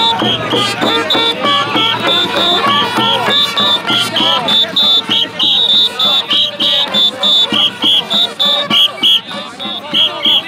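Festival kite-field din: festival music, likely brass bugles, over crowd voices, with short high notes repeating about two or three times a second.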